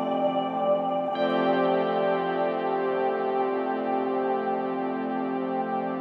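Background ambient music of long held chords, changing chord about a second in.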